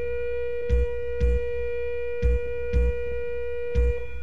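Armenian instrumental dance music: a wind instrument holds one long, steady note over a drum beat of low thumps about twice a second.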